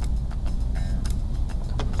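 A steady low hum with a few faint clicks, which fit computer mouse clicks.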